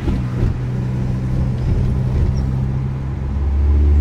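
Audi A4's turbocharged engine and three-inch exhaust with downpipe, heard from inside the cabin, pulling in a low gear with its Multitronic CVT in paddle-shift manual mode. The low drone gets louder near the end.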